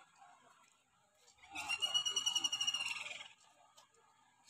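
A high, trilled whistle lasting about two seconds, starting about a second and a half in and dipping slightly in pitch as it ends.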